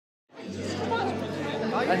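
Crowd chatter, many voices talking at once over a steady low hum, fading in from silence just after the start.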